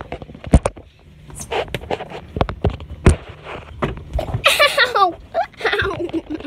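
Scattered sharp knocks and bumps over a low rumble, with a high-pitched voice calling out about four and a half seconds in and again near the end.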